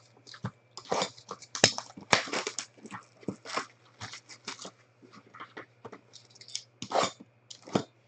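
A sealed trading-card hobby box being handled and opened by hand: an irregular run of crinkles, rips and cardboard knocks from the packaging.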